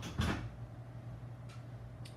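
Brief rustle and a faint click of small wired electronics being handled by hand: a drone board and its plug-in wire connector, over a steady low hum.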